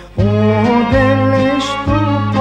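A Macedonian folk song: a singer holds long, wavering, ornamented notes over instrumental accompaniment with steady bass notes. The music dips briefly right at the start, then comes back in.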